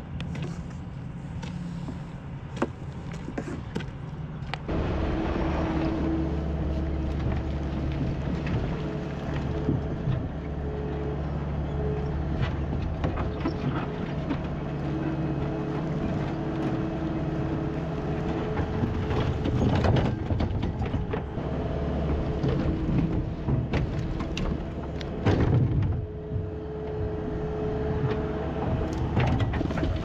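Diesel engine of a skid steer loader running steadily under load, with a hydraulic whine that comes and goes as the bucket is worked to push logs. Several short knocks of logs clattering against the bucket stand out near the middle and about 25 seconds in. The first few seconds hold only small clicks and handling sounds of fuel bottles at a plastic gas can.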